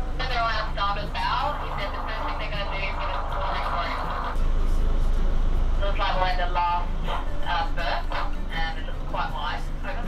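Talk about the approach to the berth over the steady low drone of the catamaran's engines running as it motors slowly in to dock; the background noise grows louder about four seconds in.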